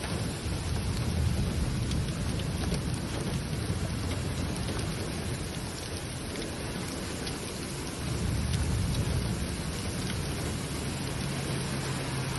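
Heavy rain pouring down in a storm, a steady hiss with a low rumble underneath that swells and eases a couple of times.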